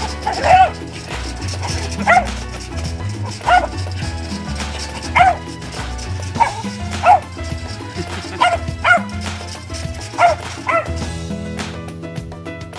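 A bulldog barking in short sharp barks, about ten of them, every second or so, over steady background music.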